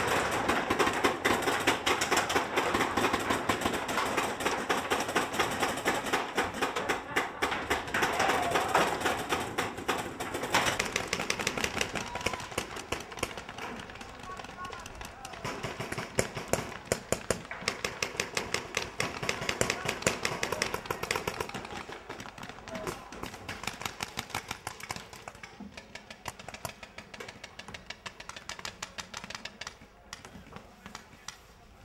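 Paintball markers firing, many sharp pops coming singly and in quick strings, mixed with players' voices. The shots and voices fade after about twenty seconds.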